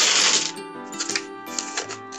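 Thin plastic shopping bag rustling loudly for about half a second, followed by a few light clicks of handling, over background music.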